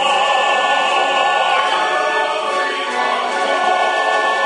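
A choir singing with musical accompaniment, many voices holding notes together.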